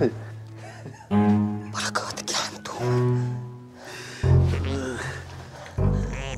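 Drama background score with long held low notes, like bowed strings, mixed with wordless voice sounds.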